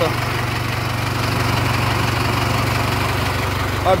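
Mahindra Arjun 555 DI tractor's four-cylinder diesel engine idling steadily, with an even low pulsing.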